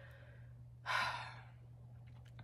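A woman's short sigh about a second in, a half-second rush of breath that fades away, over a steady low hum.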